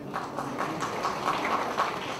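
Audience applauding: a dense, even patter of many hands clapping that eases off near the end.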